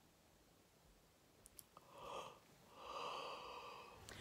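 A person's two faint breathy exhalations, a short one about two seconds in and a longer one near the end, after a couple of small clicks.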